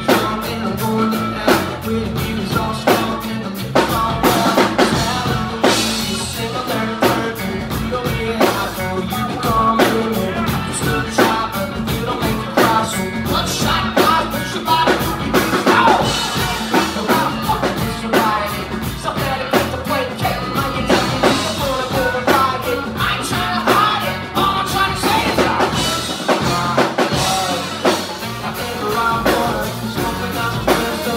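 Live rock band playing a song at full volume, with a drum kit keeping a steady beat under electric guitar, bass guitar and saxophone.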